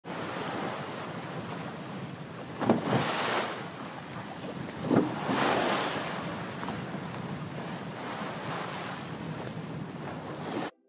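Ocean surf: a steady wash of waves, with two louder waves breaking about three and five seconds in.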